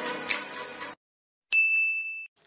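Background music stops about a second in. After a short silence a single bright notification-bell ding sound effect strikes and rings on as one steady high tone, then cuts off.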